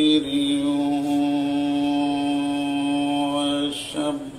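A man's voice in chanted religious recitation, holding one long, steady note for about three and a half seconds before it breaks off near the end.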